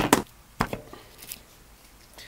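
Hammer blows on a wooden dowel, drifting a perished rubber mount bushing out of a motorcycle shock absorber's eye. Two quick knocks at the start, another a little under a second in, then a faint tap.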